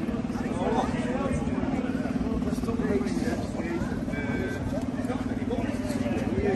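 Motor scooter engine idling steadily, with people talking in the background.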